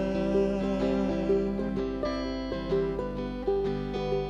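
Instrumental break in a folk song: acoustic plucked-string accompaniment picking a steady run of notes, with no voice.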